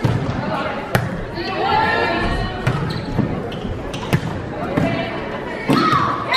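Volleyball rally in a gymnasium: several sharp smacks of the ball being hit, the sharpest about a second in and about four seconds in, with players' and spectators' shouts between them, echoing in the hall.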